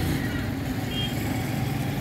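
Steady low engine hum of road traffic, with a brief faint high beep about a second in.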